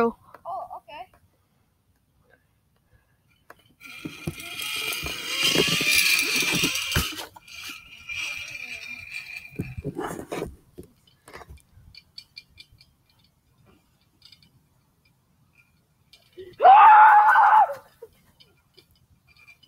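Zipline trolley running along its cable: a whirring rush that builds for about three seconds, then drops to a thinner steady whine that fades out, followed by a couple of sharp knocks. Near the end a person gives one short, loud shout.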